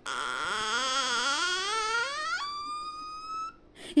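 A single pitched tone with a fast wobble glides steadily upward for about two and a half seconds, then jumps to a steady higher tone that cuts off about a second later: a siren-like sound effect.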